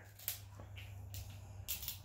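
Faint crackling and clicking of crab shell being worked open with a hand tool, with a few quick clicks near the end.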